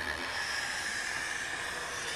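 Black felt-tip marker drawn across paper in one long continuous stroke: a steady, scratchy hiss.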